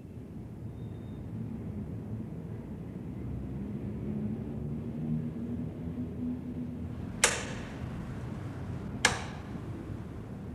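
A steady low rumble, with two sharp bursts near the end, a little under two seconds apart.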